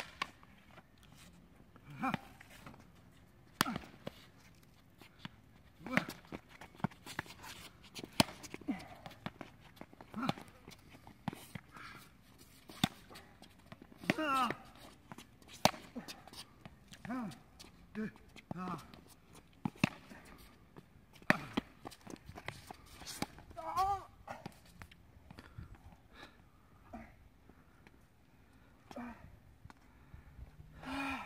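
Rushball rally: sharp ball hits about every one to two seconds, with short voice sounds from the players in between.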